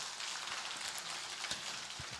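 Faint, steady hiss with no distinct events, filling a pause in amplified speech.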